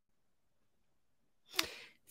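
Near silence, then a man's short, sharp intake of breath at the microphone near the end.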